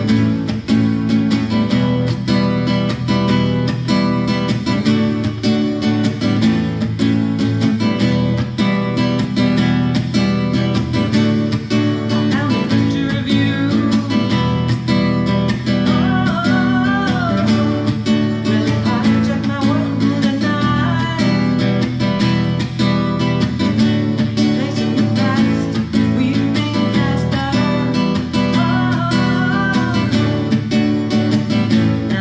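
Acoustic guitar strummed in a steady rhythm, with a woman's singing voice coming in over it in the middle and again near the end.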